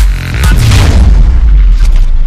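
A deep cinematic boom with a rushing sweep, the sound effect of an animated logo sting, hits about half a second in and rings on.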